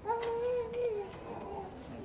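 An infant's whimpering cry: one drawn-out wail lasting about a second, its pitch dropping as it trails off.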